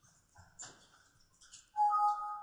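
Computer alert chime near the end: two steady tones sound together and fade over about a second as Revit pops up a warning that the highlighted walls overlap. Before it, a few faint clicks and rustles.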